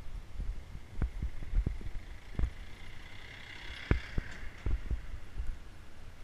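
Irregular low thumps and knocks from a handlebar-mounted action camera in its housing, jolted by bumps in the road while riding a bicycle, over a low rumble. A fainter higher sound joins about three seconds in and fades after a second and a half.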